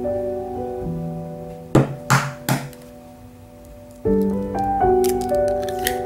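Piano music, with three sharp knocks about two seconds in: an egg being tapped against a hard edge to crack it. Near the end come short clicks as the shell is broken open.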